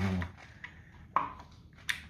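Two sharp metallic clicks, one about a second in with a short ring and one near the end, as a camshaft timing sprocket and chain are worked into place by hand on a Nissan VQ35DE V6.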